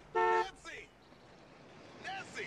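Car horn giving a single short toot, loud and about a third of a second long, just after the start.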